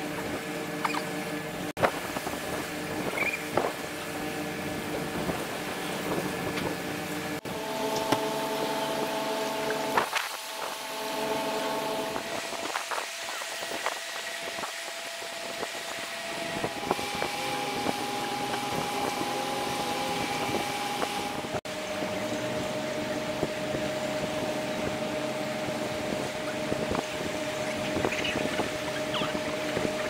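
Boats' horns sounding long, steady blasts at different pitches, several overlapping, the held notes changing a few times with a quieter lull in the middle: a harbour-wide sounding of horns in tribute at a funeral.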